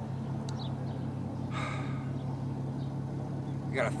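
Steady low mechanical hum of background machinery, even in pitch throughout, with a short breathy hiss about a second and a half in.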